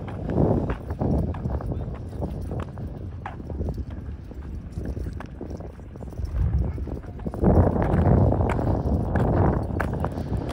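Footsteps on asphalt and people talking, with a louder stretch of sound about seven and a half seconds in.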